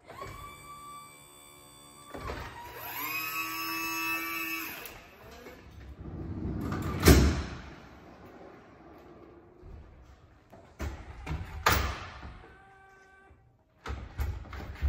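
Stryker Power-LOAD system and Power-PRO XT cot running their electric-hydraulic motors, a steady whine that rises, holds and falls off in the first five seconds as the cot is lifted and its legs fold up. A loud clunk follows about seven seconds in and another near twelve seconds as the cot is pushed into the ambulance and locks in place.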